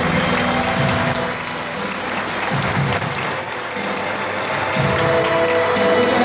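Audience applauding at the end of a live song, with the band's music fading beneath the clapping.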